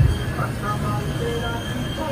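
Electric blower forcing air into a coal forge fire: a steady low hum with a rush of air, while a blade heats in the coals.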